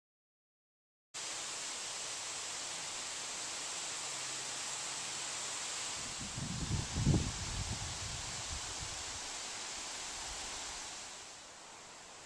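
A steady, loud hiss starts suddenly about a second in. A cluster of low rumbling thumps comes in the middle. Near the end the hiss drops to a quieter steady outdoor hiss.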